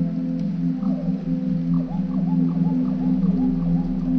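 Ambient music: a steady low drone of held tones, with a run of short gliding calls that swoop up and down over it from about a second in.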